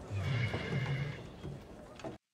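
A horse whinnying in the episode's soundtrack, heard fairly quietly through the television's speakers.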